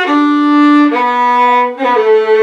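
Solo fiddle playing a slow phrase of long, smoothly bowed notes, stepping down about a second in. Near the end a quick flick of short grace notes, a double cut, leads into a higher held note.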